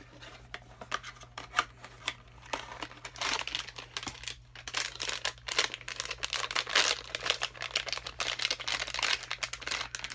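A Vinylmation blind box being torn open by hand and its packaging crinkled: a run of tearing and crinkling crackles, sparse at first and busy from about two and a half seconds in.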